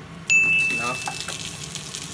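Butter sizzling as it hits a hot nonstick frying pan and is pushed around with a wooden spatula, starting suddenly and loud then easing to a steady sizzle. A steady high tone sounds over it for about a second.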